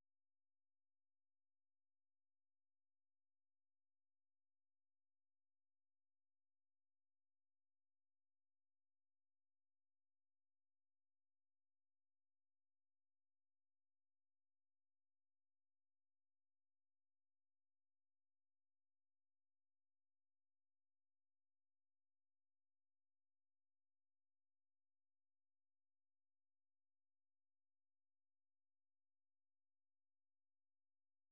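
Silence: no sound at all.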